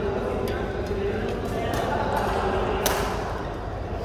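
Badminton rackets striking a shuttlecock in a rally: sharp hits roughly a second apart, two in quick succession in the middle and the loudest just before the end. Voices talk faintly underneath.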